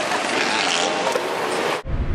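Steady rushing noise of a moving golf cart, its tyres on a dirt lot and the passing air, cutting off suddenly near the end.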